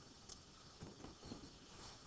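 Near silence: room tone, with a faint click about a third of a second in and a few faint low knocks shortly after.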